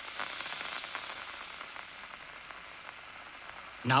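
Steady static-like hiss with a few faint, scattered clicks.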